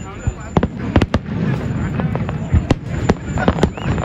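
Aerial firework shells bursting in an irregular run of sharp bangs, about a dozen in four seconds, over a continuous low rumble from the display.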